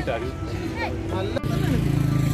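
Voices talking over background music. About one and a half seconds in, an abrupt cut brings in louder music with a steady low bass line.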